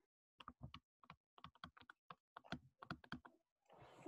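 Faint, irregular clicks and taps of a stylus on a tablet screen during handwriting, about two dozen over a few seconds.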